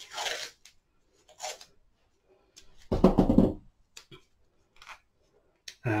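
Masking tape being pulled off its roll, torn and wrapped around the taped joint of a bent willow ring: a few short peeling and tearing noises with pauses between, the loudest about three seconds in, and some light clicks shortly after.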